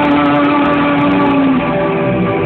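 Rock band playing live, loud and dense, with a long held note that stops about a second and a half in.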